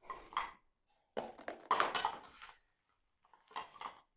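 Wrapped sweets being dropped into a bowl, clattering and rustling in three short bursts, with the longest in the middle.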